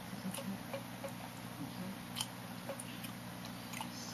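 Faint, scattered mouth clicks and lip smacks close to the microphone, a few isolated ticks, over a steady low hum.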